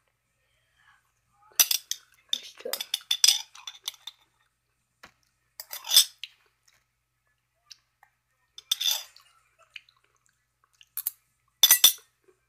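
A spoon clinking and scraping in short, scattered bursts as pickled jalapeño slices are eaten from a jar.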